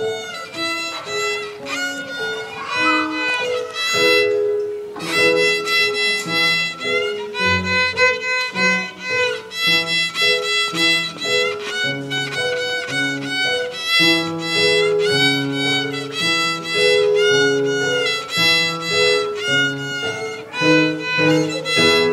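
A six-year-old beginner playing a solo tune on the violin as a string of separate bowed notes. A lower accompaniment plays beneath the violin from about five seconds in.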